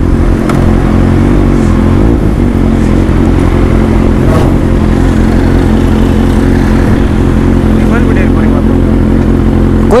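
Motorcycle engine running steadily at low revs, with an even, unchanging pitch, as the bike rolls slowly across a forecourt.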